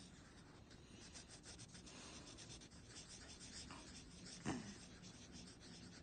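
Marker scribbling on a paper worksheet: faint, rapid back-and-forth colouring strokes. A brief voice sound comes about four and a half seconds in.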